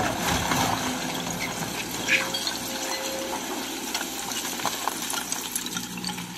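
Hydraulic excavator engine running steadily while the steel bucket digs into and scoops broken brick and stone rubble, with scattered clatters of stones and a continuous rushing noise of sliding debris.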